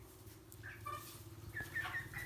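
Broiler chickens giving a few faint, short peeps, a little group about halfway through and another near the end, over a low steady hum.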